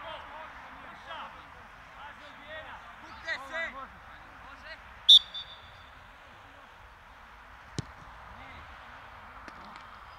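Players calling out across an open pitch, then a single short blast of a referee's whistle about halfway through, signalling the free kick to be taken, and one sharp thump of the ball being struck about three seconds later.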